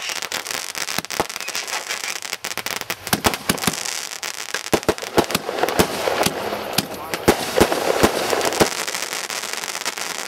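Consumer aerial fireworks bursting in quick succession: many sharp reports, several a second, over a continuous crackle of crackling stars, growing denser in the second half.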